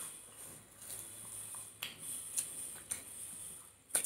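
Close-up eating sounds: soft chewing of food wrapped in dried seaweed, with a few sharp crunches in the second half, over a steady faint hiss.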